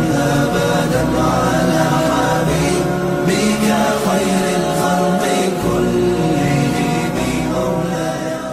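Chanted devotional vocal music in the style of an Arabic nasheed, with long held notes that shift slowly in pitch and no clear words.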